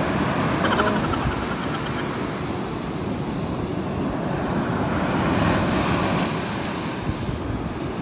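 Surf washing up the beach: a steady rush of breaking waves and foam running over sand, swelling a little about five seconds in.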